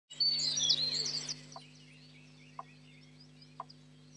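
Birds chirping and twittering, loudest in the first second or so and then fainter. A short, lower note repeats about once a second, over a steady low hum.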